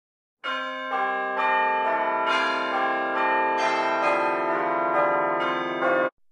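Church bells pealing: a new strike about twice a second, each ringing on and overlapping the others, starting about half a second in and cutting off abruptly at the end.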